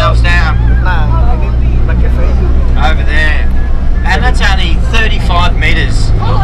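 Four-wheel-drive bus engine droning steadily, heard from inside the cabin as it drives over sand, with voices over it at intervals.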